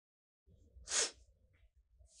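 A single short sniff about a second in, a crying woman sniffling through her nose.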